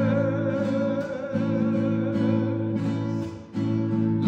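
A man singing with a held, wavering note over fingerpicked classical guitar. Shortly before the end the sound briefly drops away, then voice and guitar come back in.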